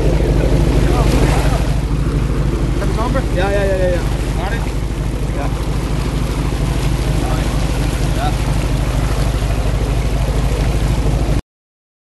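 A sportfishing boat's engine runs steadily with water rushing alongside the hull, and a brief voice calls out about three and a half seconds in. The sound cuts off suddenly near the end.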